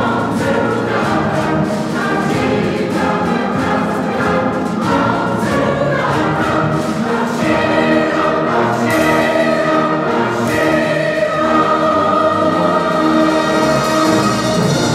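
Large mixed choir singing with a string orchestra accompanying, a live concert performance; the voices move through a phrase and then swell into long held chords in the second half.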